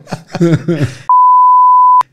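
A steady, loud, single-pitched censor bleep, about a second long, dropped over speech to mask a swear word; it starts about a second in and cuts off sharply, after a moment of a man talking.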